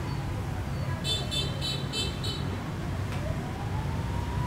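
Steady low rumble of background traffic, with a quick run of about six short, high-pitched chirps about a second in.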